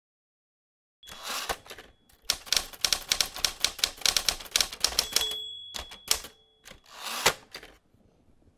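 Typewriter sound effect: a rapid run of key strikes, with a brief ringing tone about five seconds in and a last heavy stroke near the end, as title text is typed out on screen.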